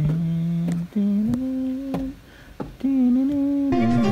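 A person humming or singing a wordless, fanfare-like tune on 'ten' syllables in three long held notes with short breaks between them, each note a little higher than the last.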